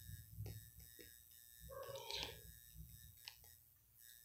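Near silence: faint room tone with a few soft taps and a brief faint voice-like sound about two seconds in.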